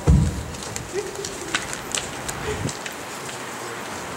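Paper and manila folders being rustled and leafed through on a table, soft scattered crackles and clicks, with a low thump right at the start.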